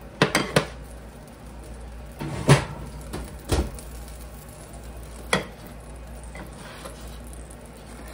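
Kitchen clatter of cookware being handled: two quick knocks just after the start, a louder clunk and then a duller thump in the middle, and one more knock later on.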